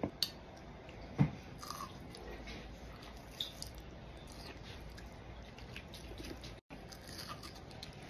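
Quiet eating sounds: a few light clicks of metal chopsticks, the sharpest about a second in, and soft biting and chewing of battered tempura.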